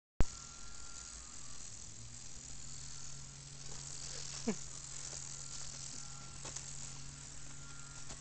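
Outdoor insect chorus forming a steady high hiss over a low steady hum, opening with a sharp click. About four and a half seconds in, one short call falls steeply in pitch.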